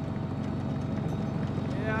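Sherman tank running on the move: a steady low engine rumble with a rapid, even clatter running through it.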